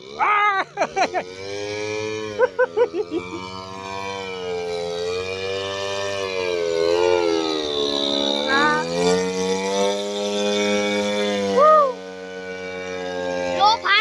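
Two-stroke model-411 brush-cutter engine powering a radio-controlled paramotor, running on throttle during a low pass, its pitch falling and rising several times as it flies close by.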